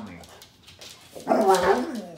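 A husky 'talking': one short, loud, pitched vocalization starting a little over a second in and dropping in pitch as it ends.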